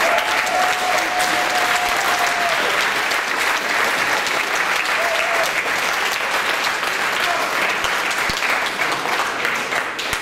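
A large audience in a hall applauding steadily, with a voice or two calling out over the clapping near the start and around the middle.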